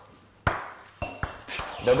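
A small hard game piece hits the table with a sharp knock, then knocks again about half a second later with a brief ringing tone and a lighter click as it bounces.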